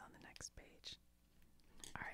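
Near silence: a few faint short clicks within the first second, with a soft whispered voice.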